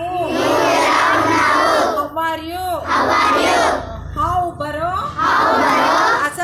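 A group of schoolchildren shouting phrases back in unison, three times, with a single woman's voice leading each phrase in between: a call-and-response language drill. The children's chorus is the loudest part.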